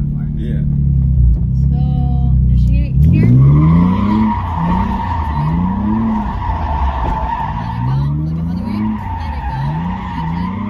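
Automatic car's engine running steadily, then revving up about three seconds in. From then on the tires squeal without a break as the car slides in a spin, while the engine pitch climbs and drops again and again with the throttle. Heard from inside the cabin.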